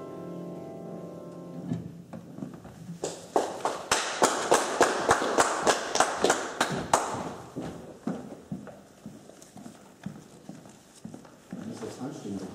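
An upright piano's last chord dying away, then clapping from a small audience: a quick, even run of claps for about four seconds that thins out into scattered claps.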